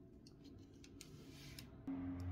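Faint light clicks and a brief rustle of fingers handling a small hard-plastic toy figure and its plastic base. A low steady hum comes in near the end.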